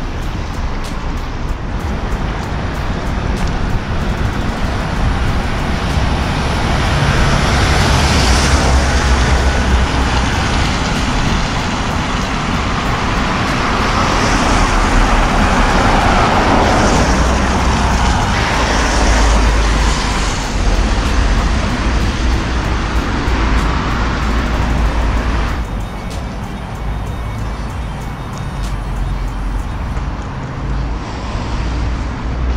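Road traffic on a suspension bridge, a steady noise of passing cars that swells louder twice, then eases near the end.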